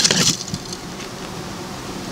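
Steady buzz of honeybees around the hives, after a brief loud noise that stops about a third of a second in.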